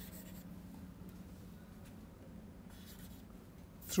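Chalk writing on a blackboard: faint scratching as the words are written out.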